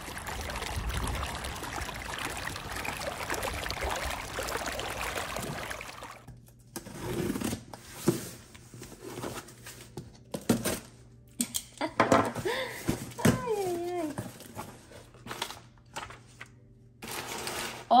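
Cardboard shipping box being opened by hand: a box cutter slicing through the packing tape, then the flaps and cardboard scraping and knocking, in short separate sounds. This follows several seconds of steady noise.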